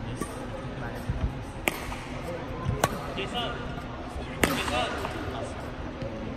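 Badminton rally: three sharp racket strikes on the shuttlecock, a little over a second apart, the last the loudest.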